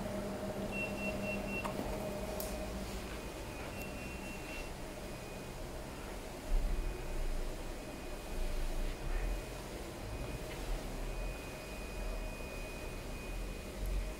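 Powered-on UV flatbed printer standing idle: a steady low electrical hum with a faint high-pitched tone that comes and goes in short stretches. A few low bumps sound in the middle.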